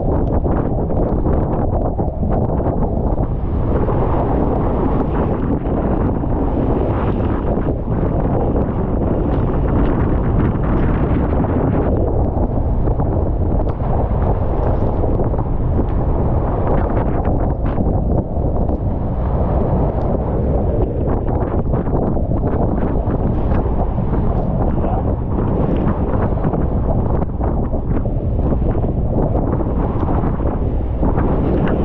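Strong typhoon wind buffeting the microphone in a steady, heavy rumble. Under it, rough sea and spray wash against an outrigger fishing boat's hull and bamboo outriggers.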